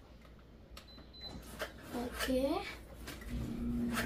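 Soft household knocks and rustles, then a short wordless vocal sound that slides up and down in pitch about halfway through. A steady low hum starts near the end.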